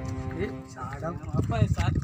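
Background music with sustained tones fades out in the first half second, and then a person starts talking.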